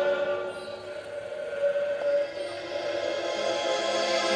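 Live progressive-rock band music led by a piano accordion holding sustained chords; the sound thins and drops quieter after about a second, then swells back up toward the end.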